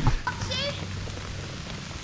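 Steady, even hiss of light rain, with a short high trill about half a second in.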